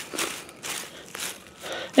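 Dry leaf mulch rustling and crackling in short bursts as a hand pushes the leaves away from the base of a tomato plant.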